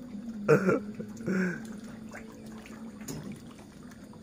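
Light splashing and sloshing of water as a hooked fish struggles at the surface. Two brief louder noises stand out in the first second and a half, over a faint steady hum.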